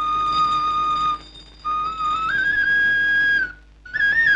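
Background film score: a solo wind melody of long held high notes with small decorative turns, broken by two short pauses.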